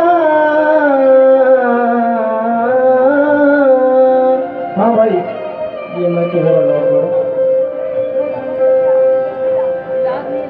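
Live qawwali: a male voice singing a long, ornamented line over a harmonium holding one steady note. The voice eases off about halfway through while the harmonium's note carries on.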